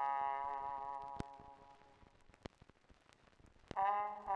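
A held brass chord from the orchestra's trumpet and trombone fades away over the first two seconds. A near-quiet gap with a few faint clicks follows, then the brass comes back in with a new chord just before the end.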